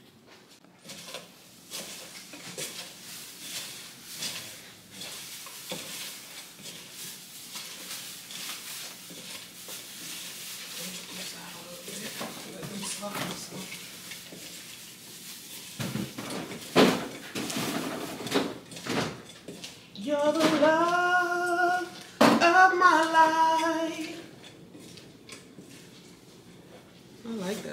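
Kitchen clatter: pots, dishes and utensils being handled, with scattered knocks and clinks. Near the end a person's voice gives two drawn-out, wavering phrases, with no words.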